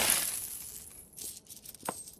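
A heap of metal medals settling with a bright jingling clatter that fades over about a second, then a few stray clinks of medals near the end.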